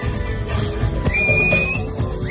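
Live electronic dance music with a regular heavy bass beat. About halfway through, a single high whistle tone rises slightly and holds for under a second over the music.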